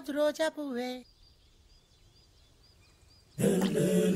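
A man's voice in short, drawn-out pitched syllables that stop about a second in. Then a quiet stretch with faint high chirps, and near the end a loud, rough vocal sound begins.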